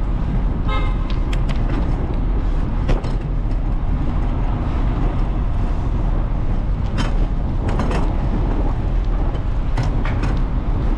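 Steady wind rush and road noise from riding a bicycle through city streets. A brief horn toot comes about a second in, and a few sharp clicks are scattered through the rest.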